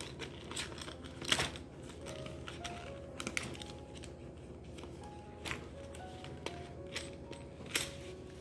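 Soft background music, a slow tune of held notes, under quiet handling of a sewing tracing kit's paper and plastic packaging, with a few sharp clicks, the loudest about a second in and near the end.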